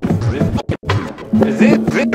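Record being scratched on a turntable through a Vestax Controller One: short scratches rising and falling in pitch, chopped by the fader with brief silent gaps. A steady held note comes in about two-thirds of the way through.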